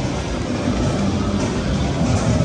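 Loud, steady game-attraction soundscape: music over a dense low rumble from the interactive blaster game.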